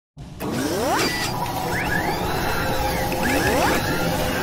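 Sound effects for an animated logo intro: several rising, whooshing sweeps over a steady, dense mechanical noise.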